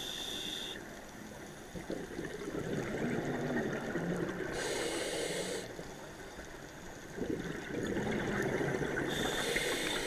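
Scuba diver breathing through a demand regulator underwater: a short hiss on each inhale, about every four and a half seconds, each followed by a longer rumble of exhaled bubbles.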